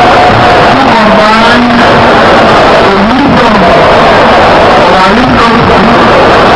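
A man's voice through podium microphones, recorded so loud that it is overloaded and buried in a constant harsh noise, with long drawn-out pitches that rise and fall.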